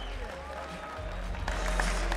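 Crowd applauding in an arena, with music with steady low bass notes coming in about a second in.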